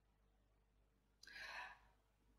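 Near silence, then a woman's soft sigh close to a headset microphone a little past the middle, lasting about half a second.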